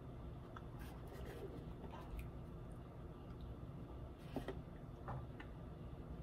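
Faint mouth sounds of a man chewing a bite of chocolate bar: a few scattered small clicks and smacks over a low room hum.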